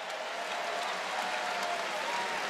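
Arena crowd applauding, a steady wash of clapping that follows a jump ball awarded to the home team.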